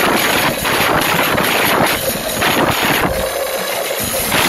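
Loud, distorted din of a street procession, with music and crowd noise overloading the phone's microphone into a steady roar.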